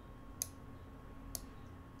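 Two faint computer mouse clicks about a second apart, over a low steady electrical hum.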